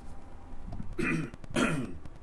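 A man coughing and clearing his throat in two short bursts, about a second in and again about half a second later.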